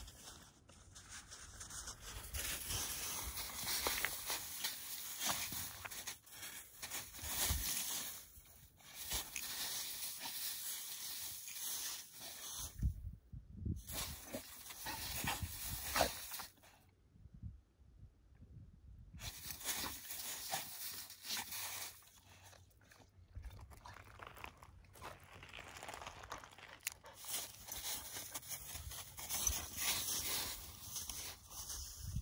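A dog rolling and wriggling in wet, melting snow: irregular crunching and rustling of the snow under its body. The sound cuts out twice near the middle.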